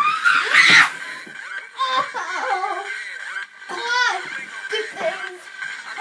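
Someone tumbling out of a handstand onto the floor, with a loud thump or two and a vocal cry at the start, followed by giggling laughter.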